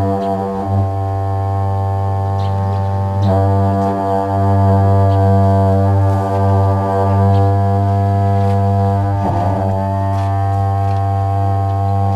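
A pair of dungchen, long Tibetan ceremonial horns, blown in a deep, steady drone rich in overtones. The note briefly wavers and is re-attacked about a second in, a little after three seconds, and again near nine seconds.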